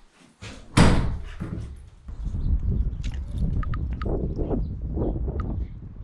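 A door bangs shut once, loudly, about a second in. A steady low rumble follows, with a few light clicks.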